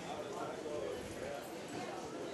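Indistinct background chatter of people in a pool hall, a low murmur of voices with no clear words.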